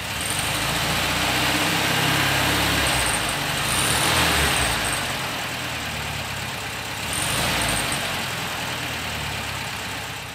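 The original 1500cc air-cooled flat-four of a 1969 Volkswagen Beetle running at idle. The engine speed rises and falls for a few seconds starting about a second in, and again briefly about seven seconds in.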